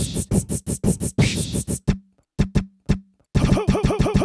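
Beatboxed vocal sounds, instantly sampled and played as a beat on Maschine drum pads: a quick run of percussive hits, a short stop-start break in the middle, then a fast stuttered repeat of one pitched vocal hit near the end.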